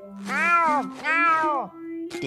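A cartoon pet snail meowing like a cat, twice, each meow rising and then falling in pitch, over a held note of background music.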